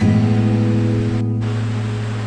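Soft instrumental meditation music: a guitar chord struck at the start and left ringing, fading slowly, over a steady hiss of flowing water.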